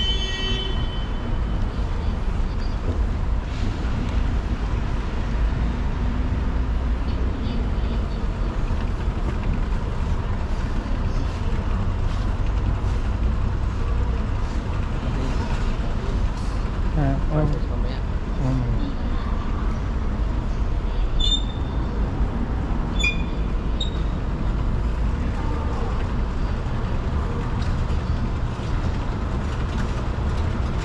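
A long escalator running: a steady low rumble of its machinery and moving steps. Faint voices come in about halfway through, and a few short high-pitched tones about two-thirds of the way in.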